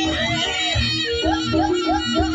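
Live jaranan gamelan accompaniment: low, steady drum beats and held gong-like tones under a high, sliding, wavering vocal melody.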